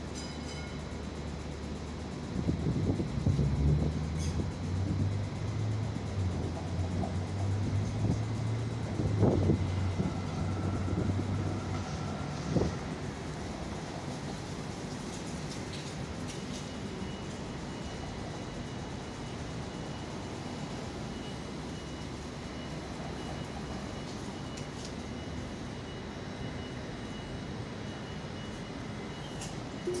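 Tram standing at a street stop with its doors open, amid city traffic. A low vehicle drone swells about two seconds in and fades by about twelve seconds, with a couple of knocks. A faint steady high tone runs through the second half.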